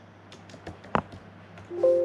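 A few computer keyboard keystrokes and mouse clicks while a search term is typed in. Near the end a steady electronic chime of two pure tones sounds and slowly fades.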